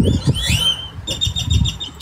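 A flock of birds calling: sweeping whistled calls, then about a second in a quick run of short high notes, over a low rumble of wind on the phone's microphone.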